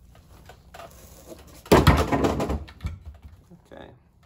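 A heavy engine flywheel, just lifted off an old Subaru engine, being set down with a loud metallic clank and rattling clatter about two seconds in, after some handling noise.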